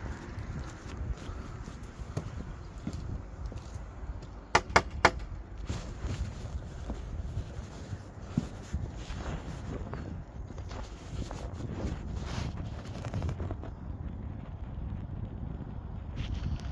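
Footsteps with cloth rubbing over the phone's microphone, and three quick knocks on a door about four and a half seconds in.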